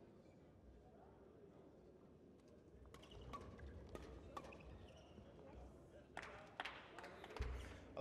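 Faint badminton rally: a series of sharp racket strikes on a shuttlecock, about half a dozen, starting about three seconds in, with a dull thump near the end.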